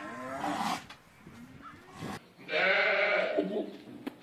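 A goat bleating loudly once, a single call about a second long, past the middle.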